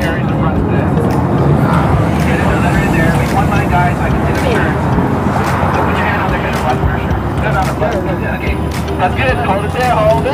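Chatter of a crowd of people talking over one another, over a steady low rumble of passing road traffic.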